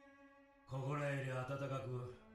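A man's low, even-pitched voice speaking a line of anime dialogue in Japanese, starting about a third of the way in, over soft sustained background music. Before he speaks, only the music is heard, faintly.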